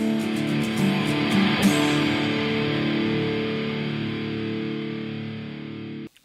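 Intro music: distorted electric guitar chords ringing out and slowly fading away.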